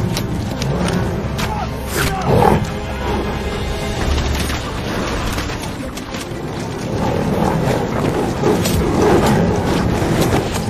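Dramatic film score mixed with tiger roars and growls, with the roars swelling loudest about two and a half seconds in and again near the end.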